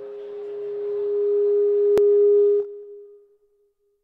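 Feedback from the PA system: a single steady tone that builds in loudness for about two and a half seconds, with a sharp click near its peak, then cuts off suddenly and fades briefly.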